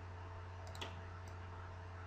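A single computer mouse click a little before a second in, opening a dropdown menu, over a faint steady low hum.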